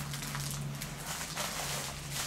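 Faint rustling and small clicks of a plastic and paper parts packet being handled, over a steady low hum.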